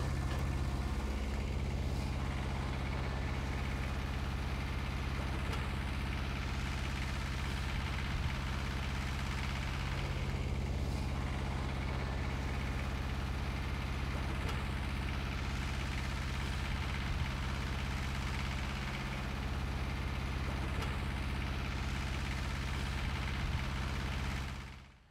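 An engine idling steadily, a low even hum that does not change.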